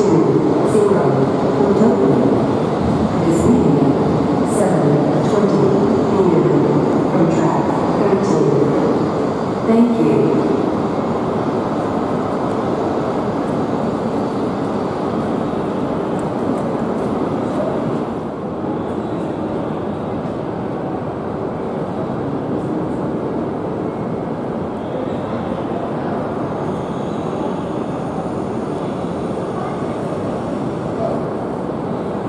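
E5-series Shinkansen train pulling out of a station platform and running away down the track. Its noise is loudest over the first ten seconds and then fades slowly as it draws off.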